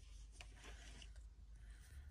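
Very faint rubbing with a couple of light clicks: a hand handling items on a shelf while reaching in to pull out a straight razor.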